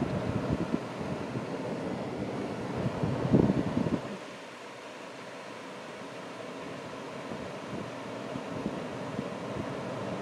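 PDQ LaserWash 360 touchless car wash spraying the car, heard from inside the cabin: a rushing spray with a low rumble that gets louder about three seconds in. It drops off abruptly at about four seconds, leaving a quieter steady hiss.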